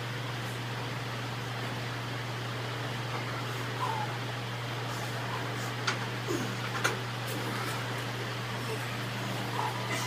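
Two sharp metal clanks about a second apart as a pair of 100-pound hex dumbbells are lifted off a metal rack, over a steady low hum in the room.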